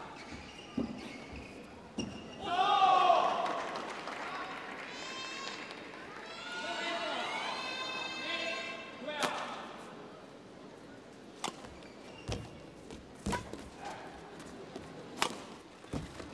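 Badminton rally in a large hall: sharp racket strikes on the shuttlecock and players' footfalls on the court, about five hits a second or two apart in the second half. Before the rally, a loud burst of voices about three seconds in.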